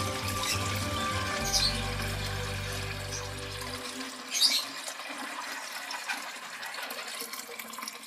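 Water poured from a plastic bucket into a plastic watering can, a gushing fill that stops about halfway through.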